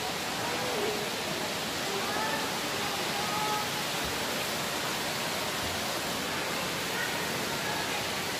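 Steady rushing of fountain water, an even wash of noise that holds at one level throughout, with faint distant voices briefly in the background.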